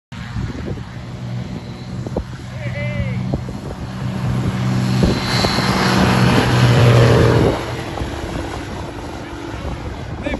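X-Air Hawk ultralight's engine and propeller at full take-off power during a short-field take-off run on grass, growing louder as the aircraft nears, then falling away sharply about seven and a half seconds in as it passes and climbs away.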